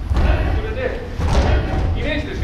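Dull thuds of bare feet setting down on tatami mats as a group of karate students lower their raised knees, over a steady low rumble.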